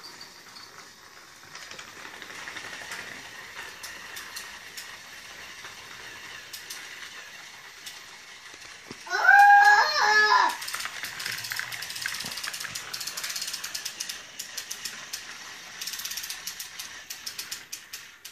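Battery-powered toy train running along plastic track: its small motor and gears whir steadily, with quick clicks as the wheels cross the track joints, more of them in the second half. About nine seconds in, a short high-pitched vocal call is the loudest sound.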